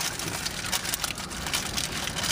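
Brown paper sandwich wrapper crinkling and rustling as it is peeled back by hand, an irregular papery crackle.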